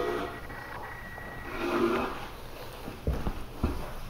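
A soft breathy murmur, then a few light knocks about three seconds in as a cup or small object is handled on a wooden tabletop.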